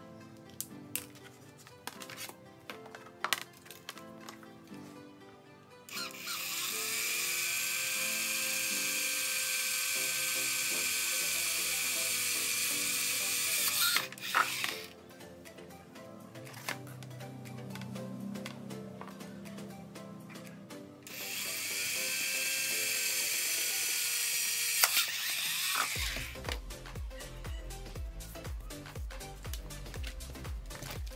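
Cordless drill running on an acrylic sheet fixed to a car tyre, in two steady runs with a held whine: one of about eight seconds and then, after a pause, one of about five.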